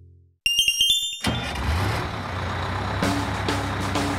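A held musical chord fades out. A quick run of bright chime notes follows, then a bus engine sound effect running with a steady low rumble.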